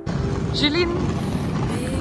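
Loud, steady rumbling outdoor noise of an airport apron, starting abruptly, with a short high woman's call about half a second in.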